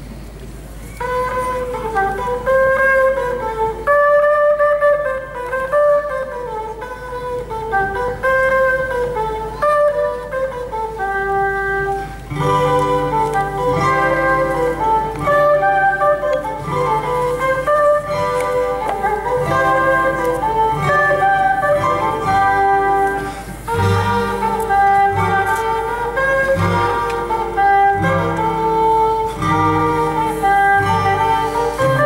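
Live instrumental folk music: a harmonica plays a gliding melody alone, and about twelve seconds in an acoustic guitar joins with a steady low accompaniment under it.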